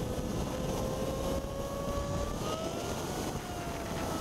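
Motorcycle engine running at highway speed under wind and road noise, its note climbing slowly for about three seconds and then easing slightly near the end.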